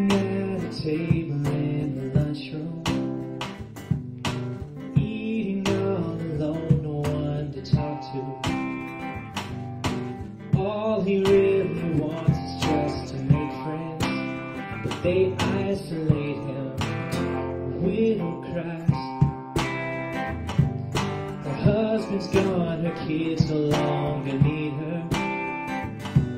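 Live band playing a country-rock song, led by strummed acoustic guitar with a steady rhythm.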